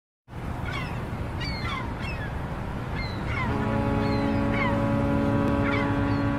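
A ship's horn sounding one long steady blast, starting about halfway through, over a waterside outdoor background with birds giving repeated short falling chirps.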